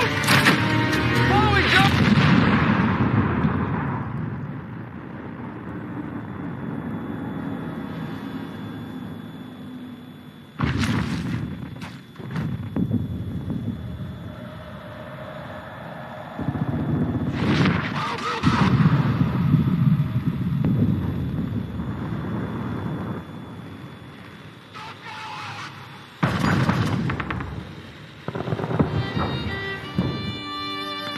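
Film soundtrack of music score mixed with gunfire and booms. It is loud at first and dies down within a few seconds. Sudden loud hits come about 11, 17 and 26 seconds in, each fading away over the next few seconds.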